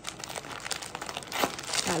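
Clear plastic bag and paper food wrapping crinkling and rustling as takeout is handled, in a rapid run of crackles that grows louder near the end.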